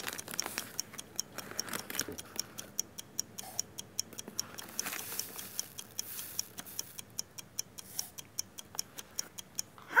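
Metal spoon scooping granulated sugar out of a paper bag and tipping it into a plastic cup: a run of small, uneven clicks and scrapes, a few each second.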